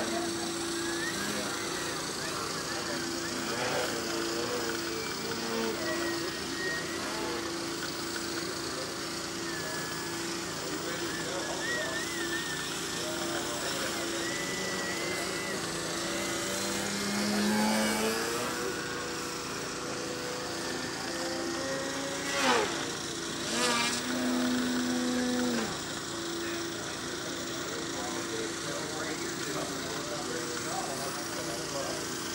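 The electric motor and 16x8 propeller of a 60-inch Extreme Flight Edge 540T EXP aerobatic RC plane, buzzing and whining, with the pitch rising and falling as the throttle changes. About two-thirds of the way in there is a sharp drop in pitch at the loudest moment, then a louder steady buzz for a couple of seconds.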